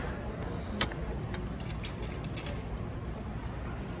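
Street ambience with a steady low rumble of traffic, a sharp click about a second in and a few lighter clicks after it.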